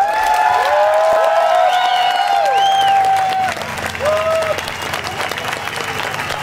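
Concert audience clapping and cheering as a song ends, with whoops that rise and fall over the clapping; the ovation eases off a little about halfway through.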